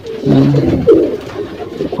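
Racing pigeons cooing: a few short, low coos in a row.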